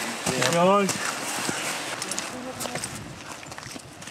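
Location sound of a group of climbers on a rocky mountain trail: a brief voice in the first second, then scattered footsteps and clinks of gear over a steady background hiss.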